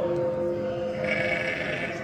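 Live band holding a sustained chord that fades over the first second, followed by a thinner wash of higher sound, heard from within the audience.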